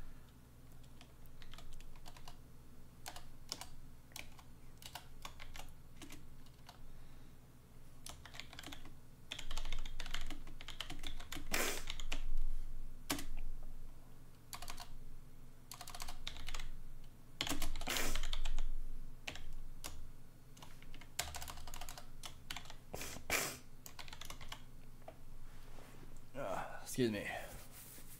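Typing on a computer keyboard: irregular runs of key clicks, busiest and loudest about ten to thirteen seconds in and again around eighteen seconds.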